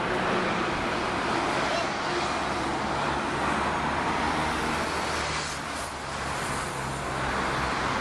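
Street traffic: a steady rush of road noise with the low hum of a motor vehicle engine running close by.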